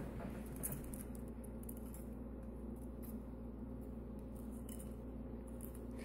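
Faint scraping and a few light taps of a wooden craft stick working a wet crystal mixture out of a glass bowl into a plastic tray, over a steady low hum.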